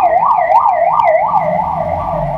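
Electronic siren in a fast yelp, its pitch sweeping up and down about three times a second, growing fainter near the end.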